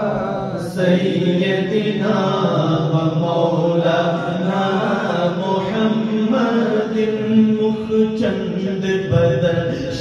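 Men's voices chanting a melodic devotional refrain in a naat recitation, held long on sustained notes without distinct words.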